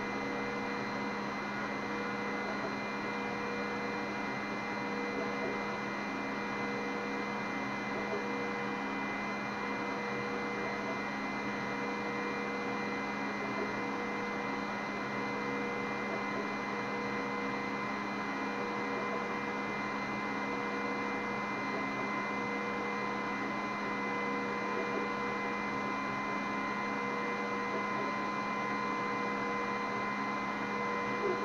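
Glowforge laser cutter running through a cut: a steady hum of its fans, with a tone near 500 Hz that comes and goes as the laser head moves.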